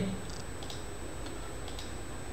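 A few faint, light clicks from the computer desk, the tail of a burst of typing, over a steady background hiss.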